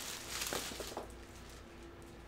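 Clear plastic bag crinkling and rustling as it is pulled off a figure, loudest in the first second and then dying away.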